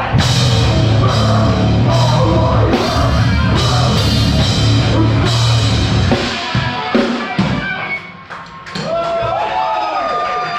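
Live metalcore band playing loud and dense, the Pearl Masters Maple drum kit and Zildjian cymbals driving it, until about six seconds in. The song then breaks up into scattered hits and a short lull. Near the end, long tones that rise and fall come in as the song finishes.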